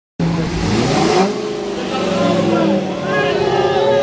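A classic Pontiac muscle car's engine revving as the car pulls away, its pitch climbing over the first second with a surge of exhaust noise, then running on more evenly. Crowd voices and shouts come in over it in the second half.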